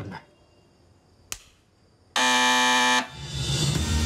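A single loud electric buzzer sounds about two seconds in: one steady tone held for under a second and cut off sharply. A click comes shortly before it, and background music starts right after the buzz.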